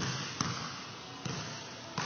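Leather basketball bouncing on an indoor gym floor: four separate thuds at uneven spacing, each with a short echo from the hall.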